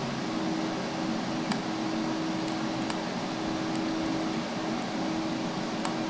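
Desktop PC cooling fans running at full speed: a steady rush of air with a steady low hum. A few faint clicks are heard during it.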